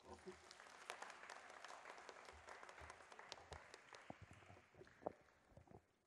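Audience applause, faint, thinning out and dying away about five seconds in.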